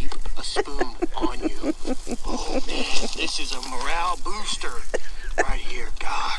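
Men laughing, in quick repeated pulses of voice with no words.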